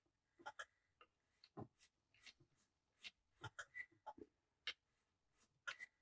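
Faint, irregular little scrapes and clicks of a hand burnishing tool pressed against fresh thread wraps on a rod blank, packing them tight.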